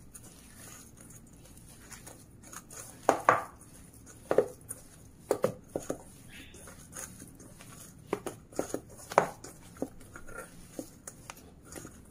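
Hands kneading a grated potato and paneer mixture in a stainless steel bowl: soft squishing of the mash with irregular short clicks and scrapes of fingers against the steel bowl.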